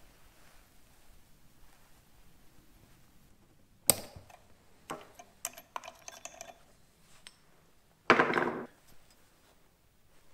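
Stihl MS 260 chainsaw parts handled on a wooden workbench. A sharp metal knock about four seconds in is followed by a run of lighter clicks and rattles, then a short scrape about eight seconds in.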